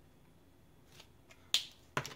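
Plastic Copic marker caps clicking off and on: a couple of faint clicks about a second in, then one sharp snap, and another click near the end.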